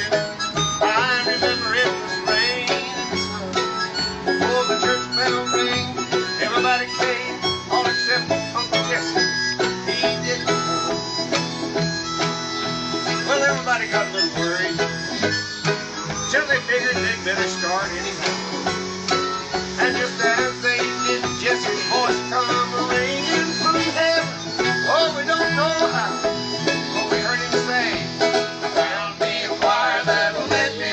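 Bluegrass band playing an instrumental break on banjo, fiddle, acoustic guitar and upright bass.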